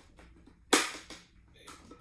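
A helmet's outer visor snapping into its side pivot mount: one sharp plastic click about two-thirds of a second in, as the visor seats on its fittings.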